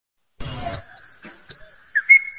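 Three high, level whistle notes open a song, the middle one pitched higher, after a short burst of noise.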